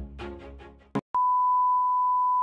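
Background music fades out, a short click follows, then a steady, single-pitch 1 kHz test-tone beep starts about a second in: the reference tone that goes with television colour bars.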